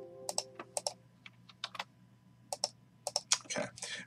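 Typing on a computer keyboard: scattered single key clicks, coming faster near the end. A ringing multi-note tone fades out during the first second.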